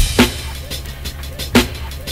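Boom bap hip hop instrumental beat: drum kit strikes of kick and snare over a low bass line.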